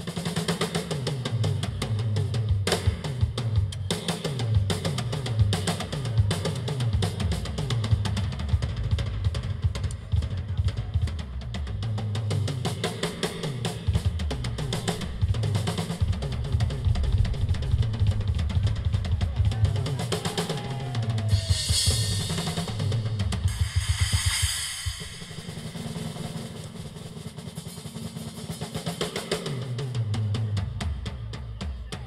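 Acoustic drum kit played solo: fast, dense strokes on the bass drum and toms with snare and cymbal hits. About two-thirds of the way through, a cymbal wash swells and then stops suddenly, and the playing goes on more softly near the end.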